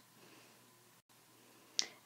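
Near silence: faint room hiss in a pause in the narration, cutting out completely for a moment about halfway through, then a single short, sharp click near the end.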